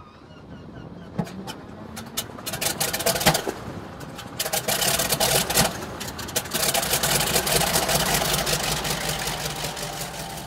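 Two North American T-6 Texans' nine-cylinder Pratt & Whitney R-1340 radial engines being started. They cough and pop irregularly as they catch, with the loudest pop about three seconds in, and settle into a steadier, louder run from about halfway through.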